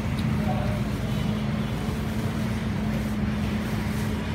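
Steady street traffic noise under a constant low engine hum.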